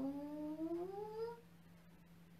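A woman's long, drawn-out chanted 'hang' from a tai chi breathing exercise, its pitch rising steadily until it fades out about a second and a half in. A faint steady hum lies underneath.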